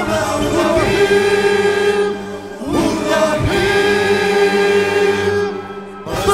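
Singers holding long notes together over backing music, in two sustained phrases; the second swoops up into its note just before the midpoint.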